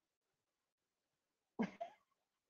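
Near silence, then a person coughs twice in quick succession near the end.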